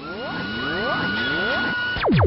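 Cartoonish sound effect laid over toy water guns firing: a cluster of overlapping rising pitch sweeps under a steady high whistling tone, building slightly in loudness.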